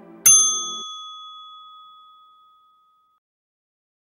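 A single bright bell ding about a quarter second in, its ringing fading away over roughly three seconds. The tail of background music fades out in the first second.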